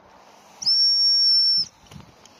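Gundog hunting whistle blown once in a single long, steady, high blast of about a second. This is the stop whistle, the signal that tells the retriever to sit.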